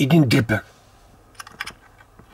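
A man's voice for the first half-second, then a few light, quick clicks about a second and a half in from a small metal rebuildable drip atomizer being handled.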